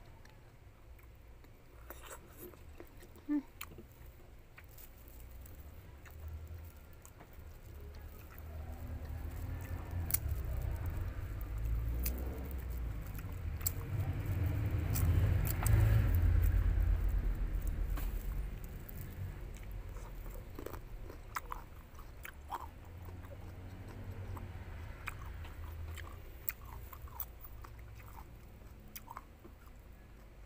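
Close-up eating sounds of rambutan: chewing the fruit flesh and tearing open the hairy rinds, with scattered small clicks. It is loudest around the middle.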